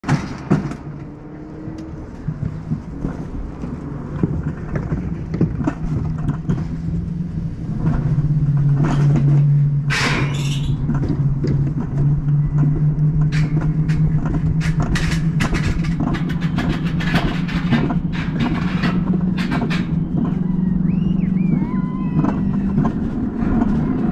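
Alpine coaster sled running on its tubular steel track: a steady low hum from the wheels, growing louder about eight seconds in, with many clicks and rattles over it.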